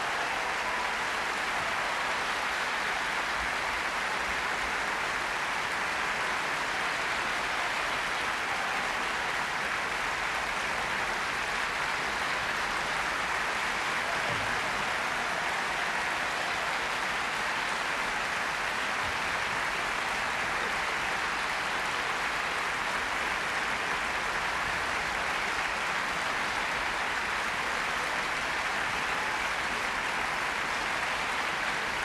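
Large theatre audience applauding steadily, a continuous, even wash of clapping that neither swells nor fades.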